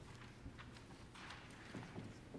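Near silence in a large hall, with faint scattered light knocks and a soft rustle about a second in, like people shifting and handling papers.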